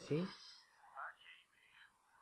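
Faint, tinny voices from a Samsung Galaxy Y's small loudspeaker playing a video's soundtrack, thin and without any low end. A man's spoken word ends just at the start.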